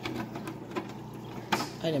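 A hard plastic aquarium lid piece being handled, with a sharp click about one and a half seconds in, over a low steady hum.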